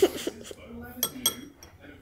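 A metal spoon clinking against a ceramic breakfast bowl: two pairs of short clinks about a second apart.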